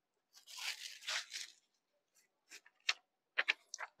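Crisp rustling of a folded saree being handled and laid on a counter, in a few bursts during the first second and a half, followed by several light clicks and taps.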